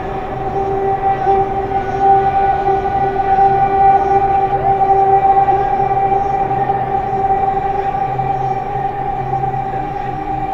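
Electronic music drone: two steady held tones an octave apart over a hissing noise bed, swelling a little in loudness around the middle and easing back, with a broken low hum underneath.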